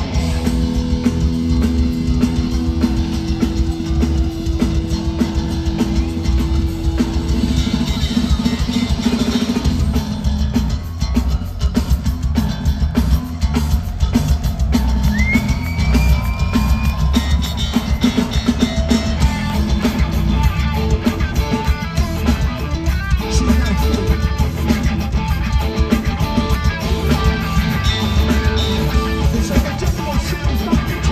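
Live crossover thrash band playing an instrumental passage: distorted electric guitars over bass and a drum kit, loud and dense as heard from the crowd.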